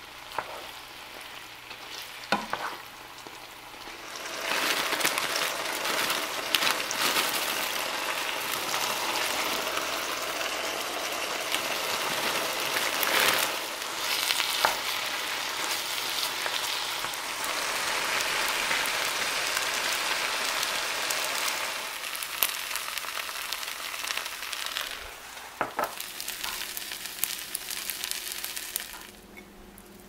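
Kimchi sizzling in hot oil in a frying pan as it is stirred with a wooden spatula. After a few knocks the sizzle comes up loud about four seconds in, turns more crackly and uneven later on, and drops away suddenly near the end.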